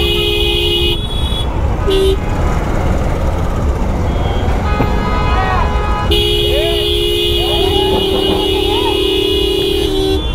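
Vehicle horns honking in a traffic jam over a steady low traffic rumble. There is a short two-tone honk at the start, a quick toot about two seconds in, and a long held two-tone horn blast from about six seconds in, lasting about four seconds.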